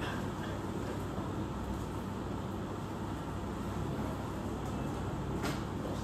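Steady low hum of room air conditioning, with one short faint click about five and a half seconds in.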